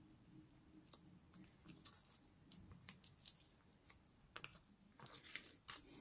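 Faint rustling and scattered light ticks of paper and card pieces being handled and shifted on a tabletop. The loudest tick comes a little past the middle.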